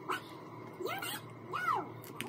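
Two short, high-pitched vocal calls, each rising and falling in pitch, about a second in and again near the end.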